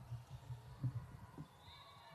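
A run of low thuds from players' feet and the ball on a hardwood basketball court, the loudest a little under a second in. A faint high squeak starts near the end.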